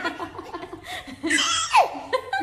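Two women laughing heartily together in quick repeated bursts, ending with a loud, high squeal that falls in pitch.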